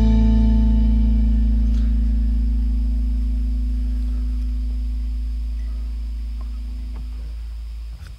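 The last chord of a reggae-rock song: a held electric guitar chord with a deep low note, fading slowly and stopping just before the end.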